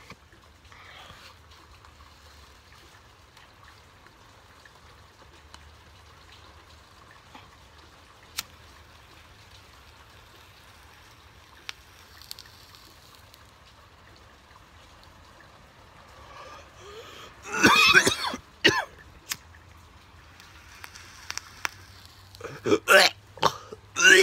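A man coughing and clearing his throat hard after inhaling smoke from an onion used as a pipe: a run of harsh coughs about three quarters of the way in, then more coughing near the end. Before that it is mostly quiet, broken only by a couple of single sharp clicks.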